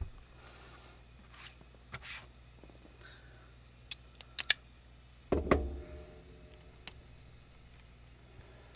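Things being handled and set down on a tabletop while a crafting station is cleared: a quick run of sharp clicks and clinks about four seconds in, then a heavier knock with a brief ringing tail about a second later, and one more click near the end.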